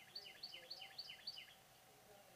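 A bird singing a quick run of about six repeated chirping notes, roughly four a second, each note dropping in pitch.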